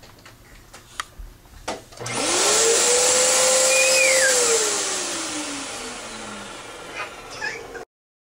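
An electric motor with a fan is switched on about two seconds in, spinning up to a steady pitch with a loud rushing noise. After a couple of seconds it is switched off and winds down, its pitch falling, until the sound cuts off suddenly near the end. A few faint knocks come before it starts.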